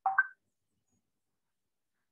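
Near silence, broken only by one brief high-pitched blip right at the start.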